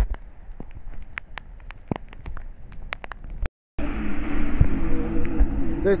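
Rain with many sharp drops ticking on the phone's microphone. After a brief cut-out about three and a half seconds in, a louder steady rumble with a low hum takes over.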